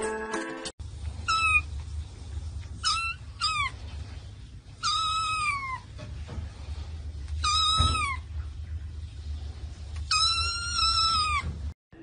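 A young tabby kitten meowing six times, high-pitched, with two longer drawn-out meows about five and ten seconds in, over a steady low hum. A moment of brass music is heard at the very start.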